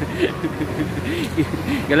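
Road traffic passing on a city street: a low, steady engine and tyre rumble from passing cars and a truck, with a quiet voice over it.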